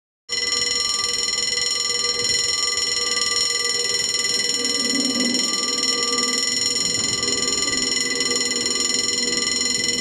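A single steady held tone with a stack of overtones, starting about a third of a second in and going on unbroken at an even level.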